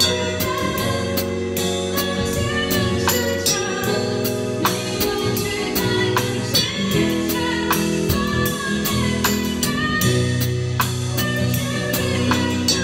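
Live drum kit played with SparxStix light-up drumsticks along to a recorded song with a singer and band: regular cymbal and snare strikes over the sung vocal line.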